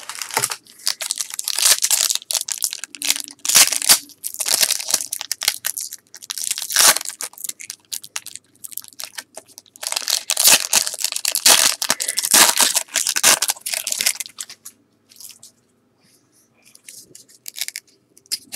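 Foil wrapper of a 1997 Topps baseball card pack crinkling and tearing as it is pulled open by hand. There are two long spells of loud crinkling, the second starting about ten seconds in, then only light rustling near the end.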